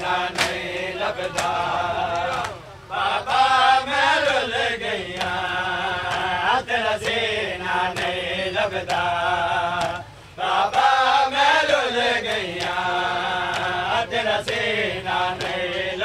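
Male voices chanting a Punjabi noha in long sung phrases, pausing briefly about two and a half seconds in and again about ten seconds in, with the repeated strikes of a crowd's matam chest-beating in time.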